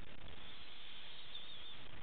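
Steady low hiss of a recording microphone's background noise, with a faint high wavering whistle in the middle.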